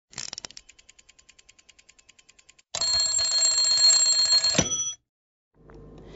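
Sound effect for an animated logo: a quick cluster of clicks, then an even run of light ticks at about ten a second. At about three seconds in, a loud, bright ringing sound with several high tones comes in, holds for about two seconds and cuts off sharply.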